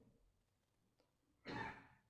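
Near silence, then a man's short in-breath about one and a half seconds in.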